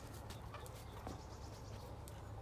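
Faint outdoor ambience: a steady low wind rumble on the microphone, with scattered small clicks and a couple of short calls from chickens foraging in the field.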